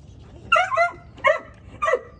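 Puppy yipping three times, short high-pitched whiny yips about half a second apart.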